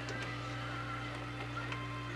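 A steady low hum with a faint, wavering high whine above it.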